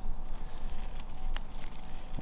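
Dry leaf litter and moss crinkling and rustling as fingers pull it from a plastic tub, with a few small ticks about halfway through.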